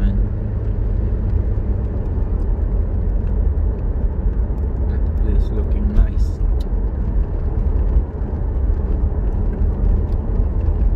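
Car driving at highway speed, heard from inside the cabin: steady low road and engine rumble, with a few faint ticks about halfway through.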